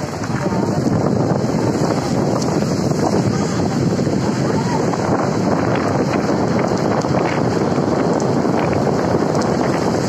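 Steady rushing noise of a car driving on a rain-wet road, with wind on the microphone.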